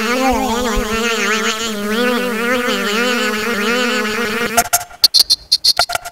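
A steady buzzing drone with slowly wavering overtones, from the soundtrack of an animated video artwork played over a hall's speakers. It cuts off about four and a half seconds in and gives way to rapid clicking percussion.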